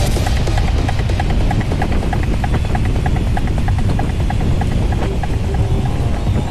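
Wind rumbling on the microphone of a bike moving at speed, under electronic background music with a quick, steady beat.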